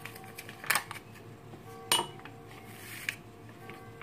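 A metal mesh sieve clinking twice against a ceramic mixing bowl, about a second apart, as it is lifted and set over the bowl, with softer rustling of a paper sachet of baking powder.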